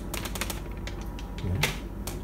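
A scatter of light, irregular clicks and ticks, several a second, with no steady rhythm.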